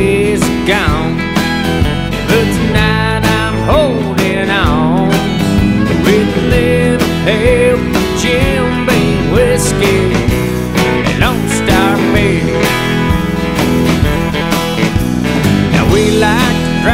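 Country band playing an instrumental break with no vocals: guitars over a steady beat, and a lead line with bends and vibrato.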